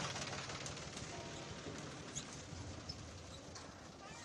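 Tractor's diesel engine running, with a rapid low pulsing that fades slightly over the few seconds. A few faint, brief high chirps.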